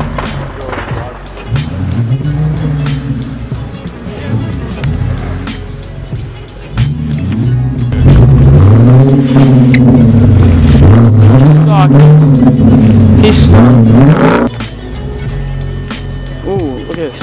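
Audi S5's engine revving up and down as the car tries to drive out of deep snow, wheels spinning without grip. The revs swing up and down at moderate level at first, then get much louder about halfway through, rising and falling several times before dropping off shortly before the end.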